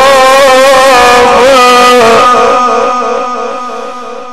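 A male Quran reciter's voice chanting in the melodic Egyptian style, holding one long, wavering note. The note steps down in pitch about two seconds in and fades away toward the end.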